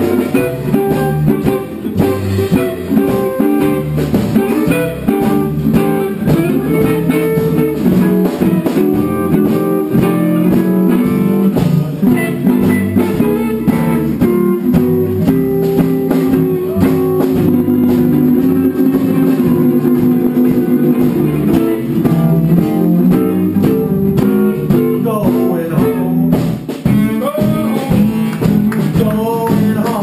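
Small jazz band playing live: archtop guitar and acoustic guitar strumming over an upright double bass, with horns.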